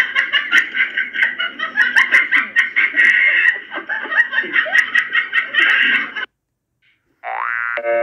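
High-pitched laughter in rapid, continuous bursts that cuts off suddenly about six seconds in. A short rising tone follows near the end.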